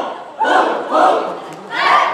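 Cheerleading squad shouting in unison in short, loud bursts, three yells in two seconds.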